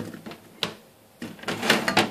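Pieces of peeled apple dropped into a glass jug: a few short knocks and clatter of fruit and hand against the glass, with a louder cluster near the end.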